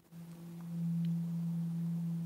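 Steady low hum, a single unchanging tone with faint overtones, growing louder a little after the first half-second.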